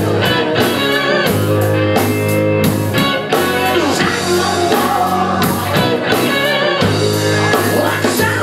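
Live rock band playing: electric guitars and drum kit with a singer, the drums keeping a steady beat.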